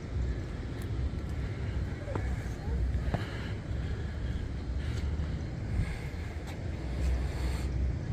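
Outdoor ambience led by a steady low rumble of wind on the microphone, with a few faint knocks.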